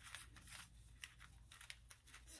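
Scissors cutting along the edge of a sheet of tissue paper: faint, irregular snips and rustles of the thin paper.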